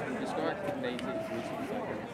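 Indistinct talking from several people, overlapping voices with no clear words.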